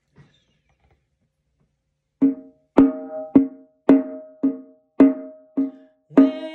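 Hand drum with a hide head struck with a padded beater. After about two seconds of quiet, it sounds a steady beat of seven strokes, about two a second, each ringing with a low pitched tone.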